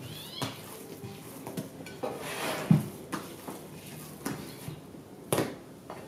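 A glazed ceramic dish knocking and scraping on the worktop as risen yeast dough is lifted out and turned onto the mat: several separate knocks, with a soft heavy thud near the middle and a sharp knock near the end.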